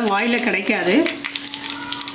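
Oil sizzling and crackling in a steel kadai on a gas burner as chopped seasoning fries, with a voice over it in the first second.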